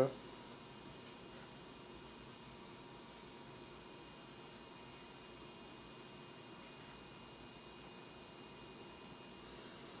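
Quiet, steady room hiss with a few faint thin steady whines from running electronics; a higher faint tone comes in near the end. No distinct events.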